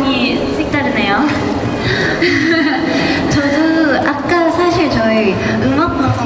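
Speech: women's voices talking through stage headset microphones, amplified over a PA.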